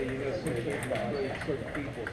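Indistinct voices talking in a large hall, with a few faint clicks of table tennis balls from play at other tables.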